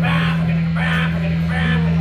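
Live rock band playing electric guitar and drum kit, with a steady low drone running underneath and repeated bright hits about every half second.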